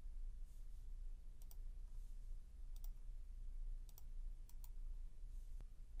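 Computer mouse button clicks: a few clicks, mostly in quick pairs about a second apart, over a faint low steady hum.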